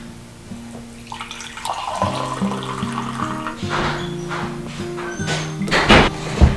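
Hot coffee poured from a glass carafe into glass mugs, a splashing pour starting about a second in, over gentle background music. A sharp knock just before the end as the carafe is set down.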